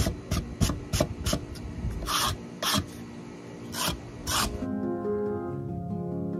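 Steel wire brush scraping along a thin strip of craft foam, about ten quick strokes that grow slower and longer, stopping after about four and a half seconds, as it scores a wood-grain texture into the foam. Soft background music with plucked notes plays underneath and continues on its own at the end.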